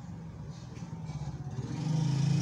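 A low, steady motor hum that grows louder toward the end.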